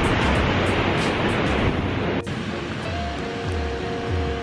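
Ocean surf and wind noise, then background music after a cut about two seconds in: held notes over a steady low beat.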